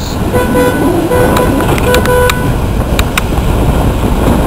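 A horn sounds several short toots over about the first half, over a steady low rumble, with a few sharp clicks later on.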